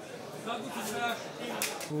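Mainly speech: a man talking over the steady background of an indoor hall, the voice coming in about half a second in and growing louder near the end.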